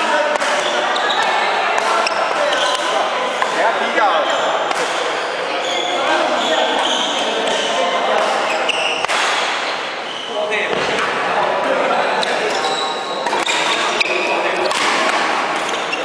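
Badminton being played in a large, echoing sports hall: sharp racket hits on the shuttlecock and thuds of footwork on the court, over continuous chatter of voices.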